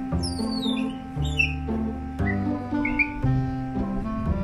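Background music, with a few high, falling squeaks over it in the first second and a half and again briefly around two and three seconds in, from a pet otter.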